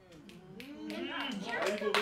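Audience breaking into clapping and voices calling out, building quickly from quiet to loud.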